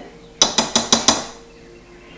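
A quick run of five sharp clinks of kitchenware knocked together, each with a brief ringing, about six a second over less than a second.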